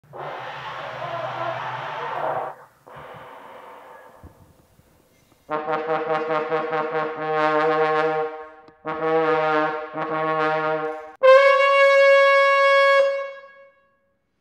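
A hand-blown glass trombone. It opens with a few seconds of airy, breathy noise, then about five seconds in come three short played phrases, and finally one long, loud high note held for over two seconds before it fades away.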